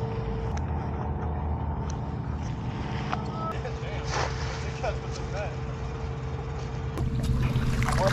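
A cast net lands in a shallow puddle with a short splash about four seconds in. Under it runs a steady low engine hum, like an idling truck.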